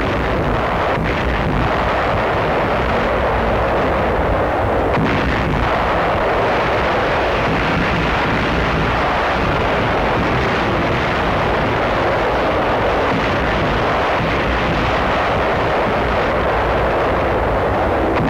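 Heavy naval gunfire from warships bombarding the shore, heard as a dense, continuous din of guns and explosions with no single shot standing out, on an old 1940s film soundtrack.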